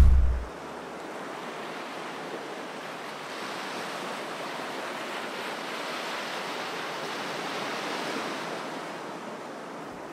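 Steady, even wash of ocean surf that swells slightly in the middle, after a short low boom at the very start.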